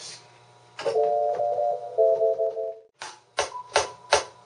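A synthesized whistle patch in Reason 4 played on a keyboard as sustained chords: one chord held for about a second, then a slightly lower one. It cuts off, and a few short sharp hits follow near the end.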